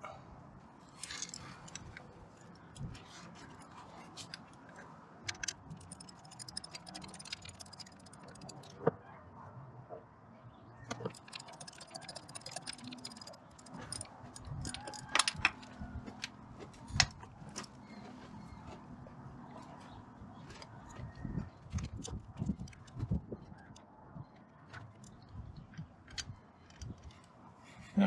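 Scattered small metallic clicks and light rattles as a bolt is worked loose from the EGR valve with a small thumbwheel ratchet. The taps are irregular, with some louder single clicks among them.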